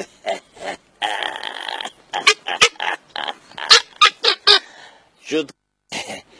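A man laughing and letting out short vocal sounds in quick, uneven spurts, with a long breathy stretch about a second in and two sharp clicks near the middle.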